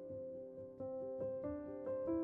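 Soft background piano music, a new note sounding every half second or so over held notes.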